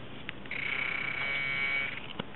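A metal detector's steady electronic buzzing tone, starting about half a second in and lasting over a second, signalling a metal target in the ground. A small click comes just before it.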